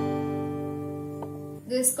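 An open G major chord on an acoustic guitar rings out and slowly fades after a single strum. A faint click comes about a second in.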